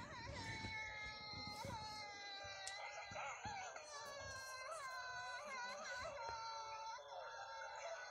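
Faint, high-pitched crying wail drawn out without a break, wavering up and down in pitch.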